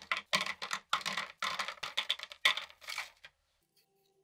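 Small rings being set down and pressed onto a paper towel on a workbench: a quick run of clicks and paper rustles that stops about three seconds in.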